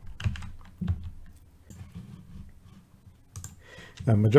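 Computer keyboard keystrokes: a few separate key taps in the first second and another pair near the end, over a faint steady low hum.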